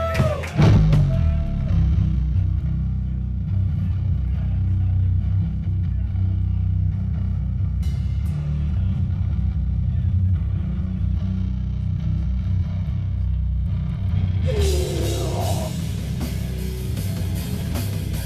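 A death metal band playing live: heavily distorted guitar and bass over a drum kit, dense and loud, with a strong low end. Near the end a brighter, harsher layer comes in.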